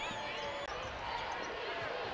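A basketball being dribbled on a hardwood court, with short sneaker squeaks, over the murmur of the arena crowd.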